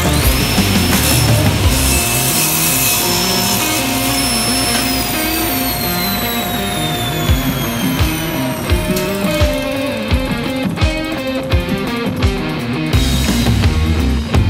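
Rock background music with electric guitar, over a SawStop table saw whose motor whine comes up at the start, runs steady, then falls slowly in pitch from about five seconds in as the blade coasts to a stop after being switched off.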